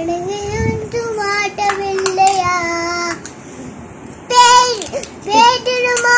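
A young girl singing a Tamil song unaccompanied, holding long notes in a high child's voice. She stops for about a second past the middle, then comes back in louder.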